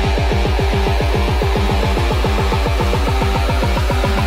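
Psytrance music: a fast, driving electronic beat with even low bass pulses about ten a second under sustained synthesizer layers.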